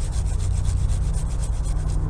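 Hand pruning saw rasping in quick, short back-and-forth strokes against serviceberry wood as a stub cut is trimmed flush and smoothed to avoid torn bark. A steady low rumble runs underneath.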